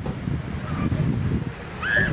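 Steady low outdoor background rumble, with a short high arching call near the end.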